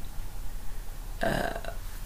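A brief throaty vocal sound from a woman, about a second and a half in, during a pause between words, over a low steady hum.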